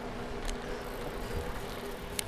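Bicycle moving along an asphalt road: a steady buzzing hum over rushing road and wind noise, with a light click about half a second in.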